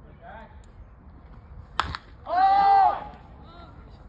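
A baseball bat hitting a pitched ball about two seconds in, one sharp crack. A loud shout follows straight after and is the loudest sound.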